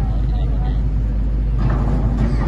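Steady low rumble of a heavy excavator's diesel engine working to break through the rock wall between the tunnel mouths.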